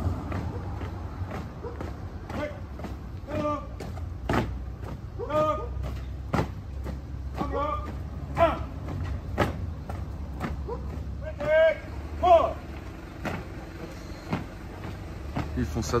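A large group of people walking and jogging past on a street: scattered voices calling out and chatting every second or two, over many small footfall-like clicks and a steady low rumble.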